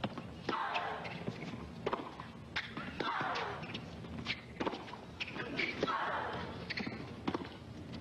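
Tennis rally on a hard court: racket strikes on the ball and ball bounces, sharp knocks coming every second or so.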